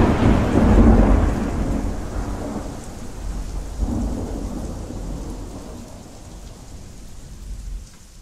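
A long rolling peal of thunder over heavy rain, loudest in the first second or two, swelling again about four seconds in, then dying away into the rain.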